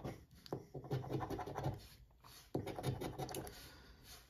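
A coin scraping the scratch-off coating from a lottery ticket in quick, short strokes, with a brief pause about halfway through.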